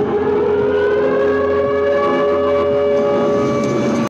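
A siren wailing in one long steady tone, rising slightly at first and then holding level.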